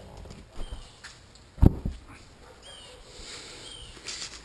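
The teardrop camper's rear hatch is shut with one loud double thump about one and a half seconds in. A few short bird chirps sound around it.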